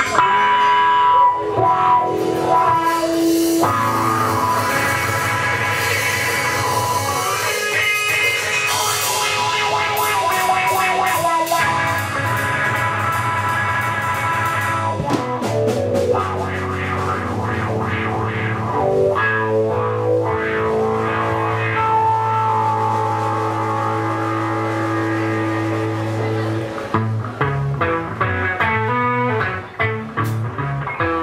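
Live electric blues in Mississippi juke-joint style: an electric guitar plays riffs and held notes over a drum kit, with a brief drop in loudness near the end.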